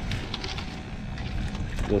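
A small fishing boat's engine running, a steady low rumble, with a few faint clicks over it.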